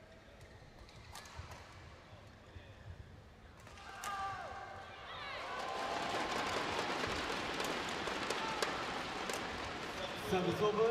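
Badminton rally: sharp racket strikes on the shuttlecock and shoes squeaking on the court floor. Crowd noise swells from about five seconds in as the rally goes on.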